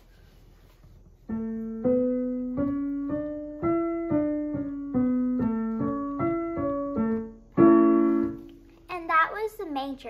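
Digital piano playing, both hands together, the first five notes of the A major scale up and back down (A, B, C sharp, D, E, D, C sharp, B, A) at about two notes a second, starting about a second in. Then C sharp, E, C sharp, A, and an A major chord (A, C sharp, E) held for about a second.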